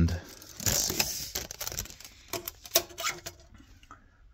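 Handling noise: a short rustle, then a scatter of light clicks and taps, as an extended steel tape measure and the camera are moved from one benchtop drill press to the other.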